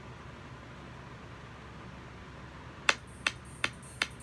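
Low room noise, then from about three seconds in a run of four sharp, evenly spaced clicks, close to three a second.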